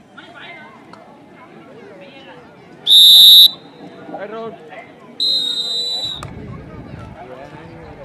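Referee's whistle blown twice: a loud short blast about three seconds in, then a longer one a couple of seconds later, over crowd voices. The whistle ends the raid after a tackle.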